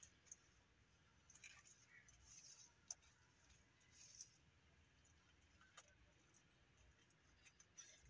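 Faint, soft squelches and a few light clicks of gloved hands pressing and smoothing wet mud over brickwork, with near silence between them.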